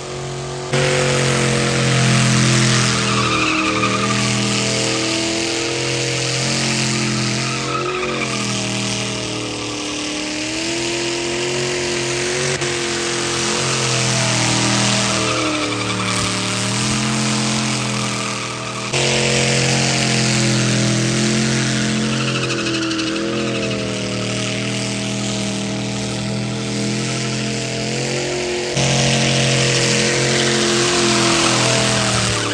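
A full-size Chevy pickup's engine is held at high revs during a burnout, its pitch wavering up and down. The spinning rear tires add a harsh noisy hiss, and the loudness jumps abruptly a few times.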